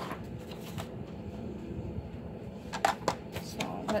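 Cardstock rustling and sliding across a cutting mat as it is handled, then a couple of sharp plastic clacks about three seconds in as a paper trimmer is set down on the mat.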